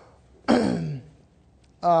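A man clearing his throat once, a short rasp that drops in pitch.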